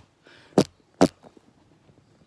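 Two sharp knocks about half a second apart, as of hard objects being handled or set down.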